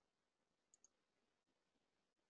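Near silence: room tone, with two or three very faint clicks.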